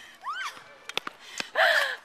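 A woman's short gasping cry, then a few sharp knocks of a tennis ball off racket strings and the hard court, and another brief cry near the end.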